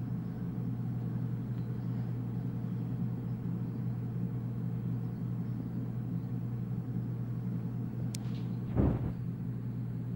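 A steady low hum, with a short faint click a little after eight seconds and a brief low thump about a second before the end.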